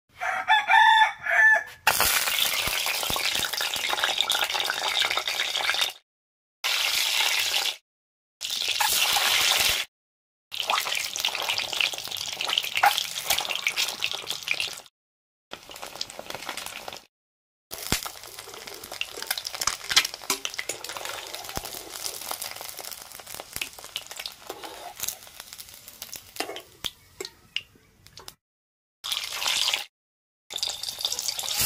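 A rooster crows briefly at the start. Then peeled hard-boiled eggs sizzle and crackle as they fry in hot oil in an iron kadai, the sizzling breaking off abruptly several times.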